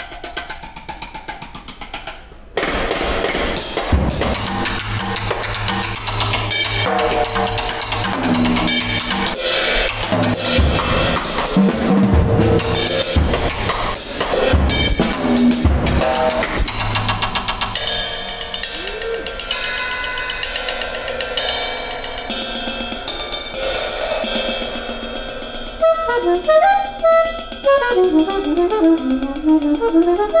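Free-improvised jazz quartet of drum kit, saxophone, piano and violin playing a dense passage, the drums busy across snare, toms and cymbals. It turns much louder about two and a half seconds in, and near the end gives way to quick, scattered high notes.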